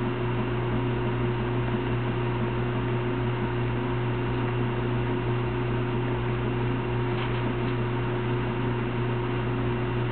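Steady low hum with an even hiss behind it, unchanging throughout.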